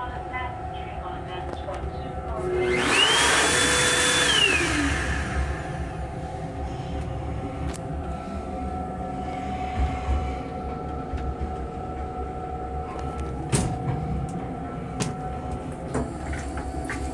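Electric hand dryer blowing for about two seconds: its motor whines up in pitch, holds, then winds down. Under it runs the steady rumble of the moving railcar, with a few sharp clicks later on.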